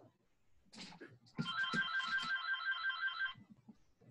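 Telephone ringing, a rapidly pulsing electronic ring lasting about two seconds, after a brief rustle. It is heard through a video-call microphone.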